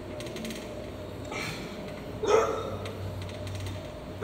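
Gym weight machine working under load: a quick run of small mechanical clicks, then two short loud breaths or strain noises from the lifter, the second about two seconds in and the loudest, over a steady low hum.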